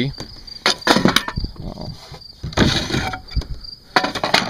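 Insects chirping steadily in the background, with several sharp knocks and thumps from someone moving about on the boat's deck and handling its fittings.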